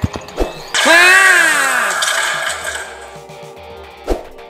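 Explosion sound effect from a dropped grenade, going off suddenly about a second in. It has a wailing tone that rises and then falls, and it fades away over the next two seconds.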